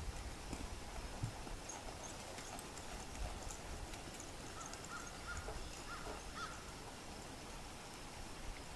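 Hoofbeats of a horse moving at a jog or lope over soft arena dirt, dull and irregular. A few short high squeaky calls come in quick succession midway.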